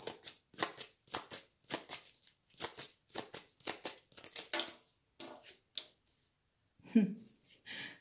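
A tarot deck shuffled by hand: a quick run of short, crisp card strokes, about three or four a second, thinning out after about four and a half seconds. A single louder sound follows about seven seconds in.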